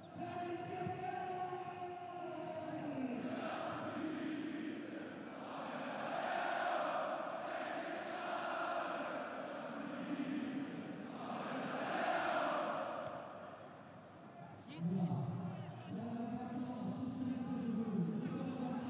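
Football stadium crowd chanting and singing in swelling waves that rise and fade several times, with a brief lull near the end.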